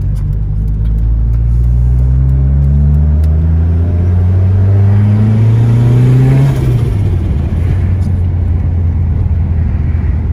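Car engine heard from inside the cabin, pulling away with its pitch rising steadily for about six seconds, then dropping suddenly and running on steady as the car cruises.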